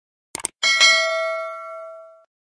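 Sound effect of a quick mouse click followed by a single bell chime, which rings out with several clear tones and fades away over about a second and a half.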